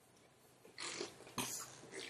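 A man breathing close to the microphone during a pause in speech: two short breathy sounds about half a second apart, starting nearly a second in.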